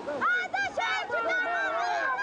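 Several people shouting at once, excited voices overlapping one another.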